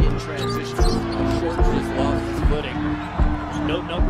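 Basketball dribbled on a hardwood court, bouncing about once a second, over sustained arena music.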